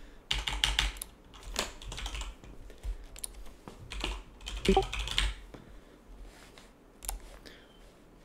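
Computer keyboard being typed on in several short bursts of quick keystrokes, with pauses between them.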